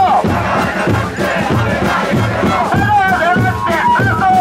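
Protest chant in call and response: the crowd shouts a slogan back, then an amplified lead voice calls the next line near the end, all over a steady beat of bass and snare drums.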